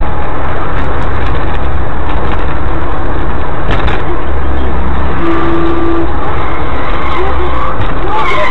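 Car cabin road and engine noise recorded by a dashcam at highway speed, loud, steady and distorted, with a heavy low rumble. A short steady tone sounds about five seconds in.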